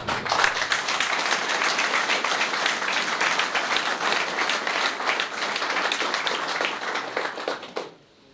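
Audience applauding: many hands clapping in a dense stream that thins out near the end and stops.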